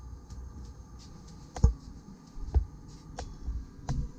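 A few dull thumps, the first and loudest about one and a half seconds in, with lighter clicks between them, over a steady faint hum.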